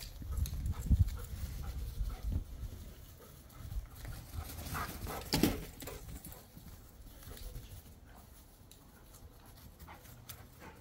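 Two dogs romping and panting as they chase each other with a rope toy, with thuds of running in the first couple of seconds and one sharp louder sound about five and a half seconds in. The second half is quieter.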